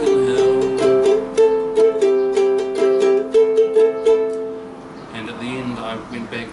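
Pineapple-shaped ukulele in G-C-E-A tuning strummed in chords, several strums a second, with the last chord left to ring and fade about four and a half seconds in.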